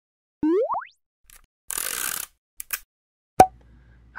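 Cartoon sound effects for an animated logo intro: two quick rising pitch glides about half a second in, then a short hissing whoosh, two light clicks and a sharp pop near the end, the pop being the loudest.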